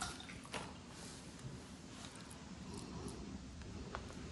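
Faint, soft handling sounds as a hand pats and presses a ball of soft mor kali dough (cooked rice, sour curd and coconut) flat on a cloth. There are a few short clicks, one about half a second in and one near the end, over quiet room noise.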